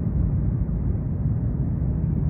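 Steady low background rumble, without speech or any distinct event.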